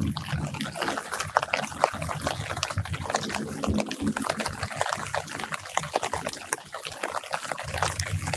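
Light rain dripping and pattering onto citrus leaves close by: a dense, irregular scatter of drop ticks over a soft hiss, with a low background rumble that fades about halfway through.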